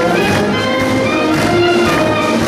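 Community band playing live, several instruments holding and changing notes together.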